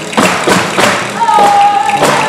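Rhythmic thumping of stage percussion and stomping, about three beats a second, from an orchestra playing southern Italian folk-style music. A steady held note joins in a little over a second in.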